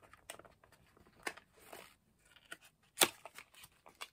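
Small cardboard box being handled and worked open by hand: quiet rustling and scraping of card flaps with a few light taps, and one sharper click about three seconds in.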